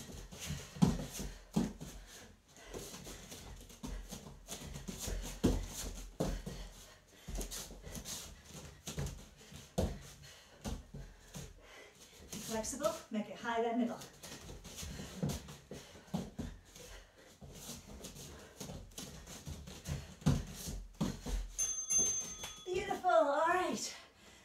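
Bare feet thudding, stamping and sliding on foam floor mats as kicks and punches are thrown, with bursts of effortful breath and voice. A brief high electronic beep near the end, an interval timer marking the round.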